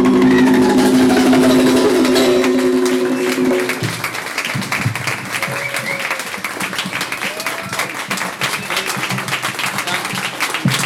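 The music ends on a held closing note that stops about four seconds in, followed by audience applause with scattered shouts and cheers.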